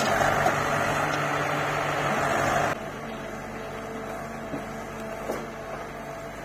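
Diesel engines of a JCB 3DX backhoe loader and a tractor running close by, a loud steady hum. About three seconds in the sound cuts to a quieter engine run, with a steady whine and a few faint knocks.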